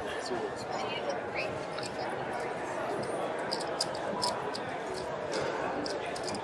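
Casino floor background din: a steady wash of distant voices and room noise, with scattered light clicks and taps from the gaming table as cards and chips are handled.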